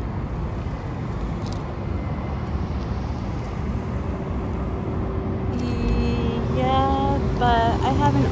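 Steady rumble of road traffic. A steady hum joins about halfway through, and voice-like sounds start near the end.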